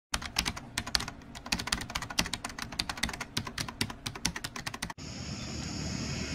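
A rapid, irregular run of sharp clicks, several a second, that stops abruptly about five seconds in. A steady outdoor background hiss follows.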